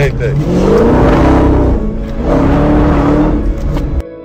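A loud engine revving, its pitch rising and falling twice over a rushing noise.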